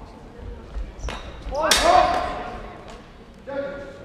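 Longsword bout: feet thudding on a wooden sports-hall floor as the fencers close, then a sharp strike about halfway through, overlapped by a loud shout. A shorter shout follows near the end.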